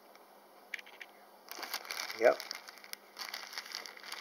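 Clear plastic bag crinkling in two spells as a bagged fossil specimen is handled: a dense crackle starting about a second and a half in, a short pause, then another near the end.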